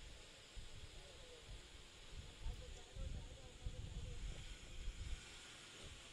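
Faint outdoor ambience at a cricket ground: uneven low rumble of wind on the microphone, with faint distant voices.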